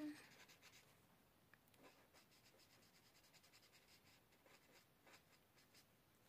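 Faint scratching of a marker nib stroked across paper in a run of short, soft strokes.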